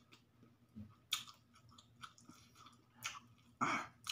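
A person chewing a mouthful of pancit canton noodles close to the microphone, with a few short wet mouth sounds about a second in and around three seconds in, and a louder mouth sound just before the end.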